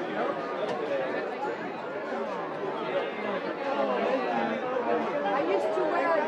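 Many people talking at once: a steady, continuous hubbub of overlapping voices in a busy room.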